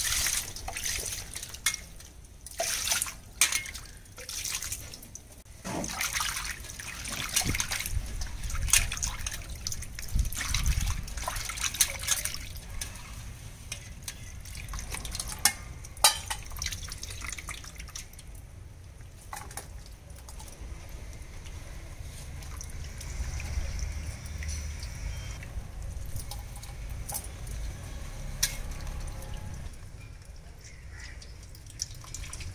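Water splashing and dripping in a steel basin as hands wash shucked clam meat: water poured in from a mug at first, then the meat squeezed and swished by hand, with water running off the fingers.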